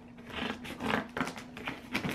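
Cardboard shipping box being opened by hand: a few short scraping and rustling noises of tape and cardboard.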